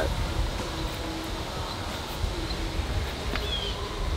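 Outdoor background with a steady low rumble and a brief faint high chirp about three and a half seconds in.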